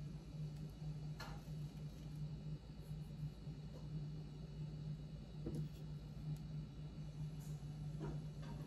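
A few faint clicks and rustles of a knife slitting a dried vanilla bean pod held in the fingers, the clearest about a second in and again past the middle, over a steady low hum.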